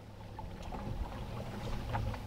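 Boat motor running at low speed with a steady low hum, growing a little louder.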